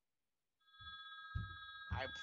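A faint, steady electronic ringing tone, several high pitches sounding together, starting a little over half a second in. A few soft low thumps sound beneath it.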